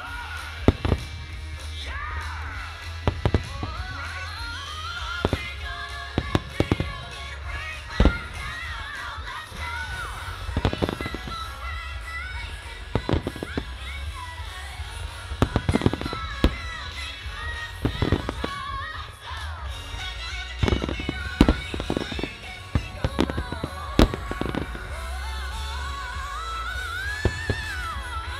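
Aerial fireworks shells bursting in dozens of sharp bangs at irregular intervals, some in quick clusters, over continuous music with a melody.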